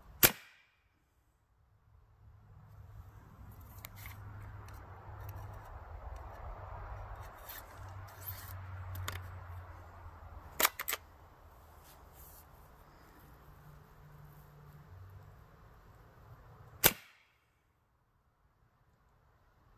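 A few sharp cracks: one at the very start, a quick pair about ten and a half seconds in, and one near the end. Between them runs a faint, steady background noise with a few soft clicks.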